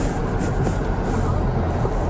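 Vehicle engine and tyre noise heard inside the cabin as it rolls slowly along: a steady low rumble.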